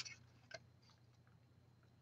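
Near silence, with a faint click about half a second in as vellum paper is slid into a handheld craft punch.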